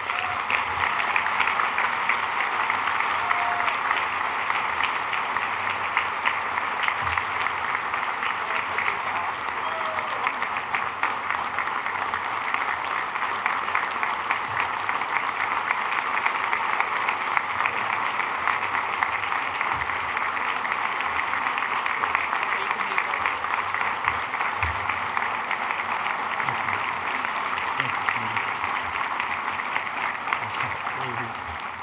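Applause from a large audience, beginning abruptly and holding steady as a dense, even clapping.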